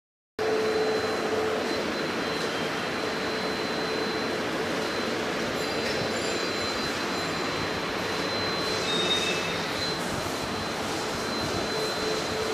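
Steady, even rushing background noise of a large indoor office hall, with a faint high whine held throughout.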